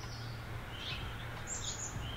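A few faint, short bird chirps over a low, steady background hum.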